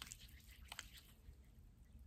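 Near silence, with faint squishes and a few soft clicks of hair cream being rubbed between the palms and worked into short hair, most of them in the first second.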